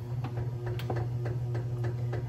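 Zojirushi bread machine kneading dough with its lid closed: a steady motor hum with a rapid, regular ticking of about four to five clicks a second.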